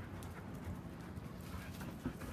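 Faint scattered light clicks and rustles of an Irish setter moving through dry brush and leaf litter, over a low steady rumble.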